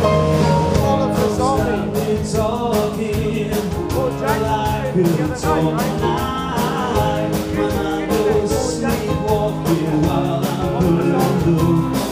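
Live rock band playing a song: a male lead singer over electric guitar, keyboard and drum kit, with a steady beat.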